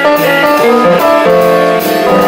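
Live jazz band playing an instrumental passage, with piano among the instruments and regular cymbal-like strokes above it.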